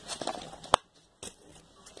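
Small plastic pot and its lid being handled: a few light clicks, then one sharp click about three-quarters of a second in and a weaker one a moment later.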